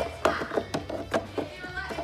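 A series of light plastic clicks and knocks from a Hoover SpinScrub steam vac's dirty water tank and flap being handled and pushed into place, over faint background music.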